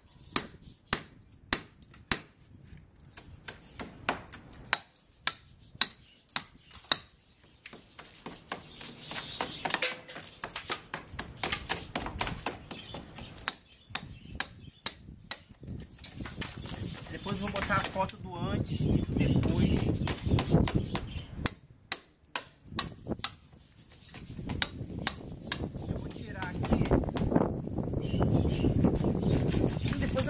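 Hand hammer and chisel chipping at a concrete slab, a series of sharp strikes about one to two a second, breaking the concrete away around an embedded electrical box. In the second half a low, unsteady background rumble rises under the strikes.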